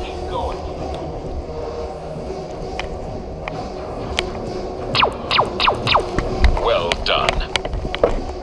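Laser tag guns firing: a quick run of about six short falling electronic zaps in the second half, over a steady low hum and murmur of voices in the arena.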